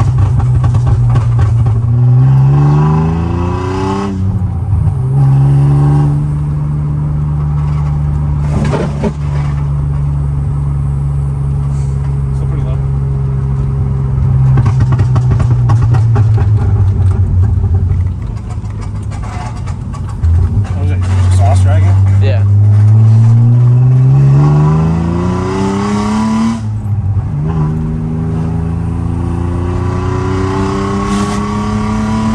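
BMW Z3 engine heard from inside the cabin, revving up through a gear and shifting up about four seconds in, then running steady at cruise. It revs up again from about twenty seconds in, with another upshift near the end and the revs climbing once more.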